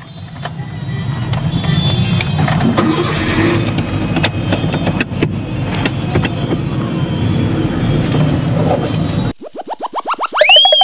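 Maruti Suzuki Eeco van's engine running as the van creeps forward, a rumble scattered with clicks and rattles. It cuts off suddenly near the end, where a rising cartoon sound effect begins.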